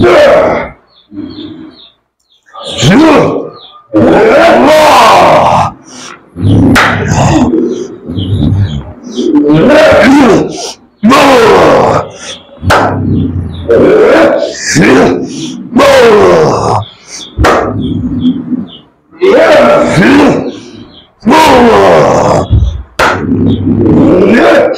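A man's wordless roaring and screaming, a dozen or so loud, strained cries of a second or two each with the pitch sliding up and down, the cries of someone in a possession-like fit during an exorcism.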